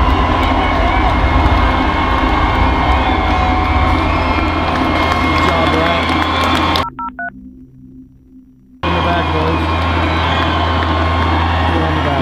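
Loud live concert sound: an amplified band with a heavy steady bass under crowd noise. About seven seconds in it cuts out for two seconds, with a few short electronic beeps in the gap, then comes back.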